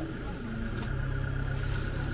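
A steady low mechanical hum with a faint steady high tone over it, and faint voices in the background.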